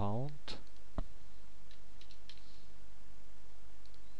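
Computer mouse clicks: two distinct clicks in the first second, the sharper one about a second in, then a few faint ticks, over a steady low hum and hiss.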